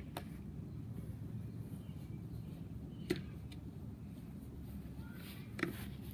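Steady low outdoor background rumble with three short sharp knocks: one right at the start, one about three seconds in and one near the end.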